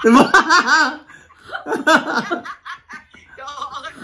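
People laughing together: a loud burst of laughter at the start, another about two seconds in, then trailing off quieter.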